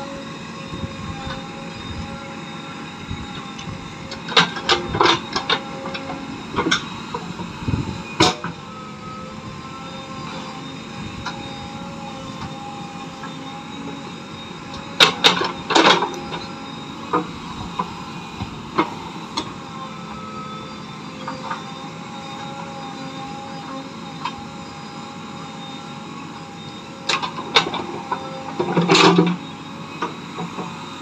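JCB 3DX backhoe loader's diesel engine running steadily as the backhoe digs, with clusters of sharp knocks and clanks from the bucket and arm, loudest about halfway through and again near the end as soil is dumped.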